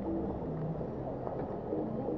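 Low, steady road-traffic rumble at a city junction, with short low hums that shift in pitch.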